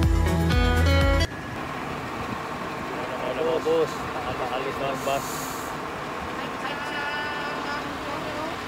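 Background music cuts off about a second in. It is followed by the steady outdoor noise of a bus engine running, with a few short bits of voices and a brief hiss about five seconds in.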